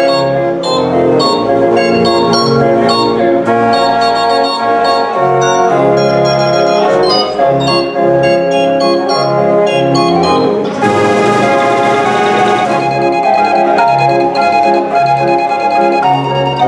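The Dutch street organ (draaiorgel) De Lekkerkerker playing a tune on its pipes, with a pulsing bass accompaniment. A little past the middle, a noisy burst of the organ's percussion lasts about two seconds.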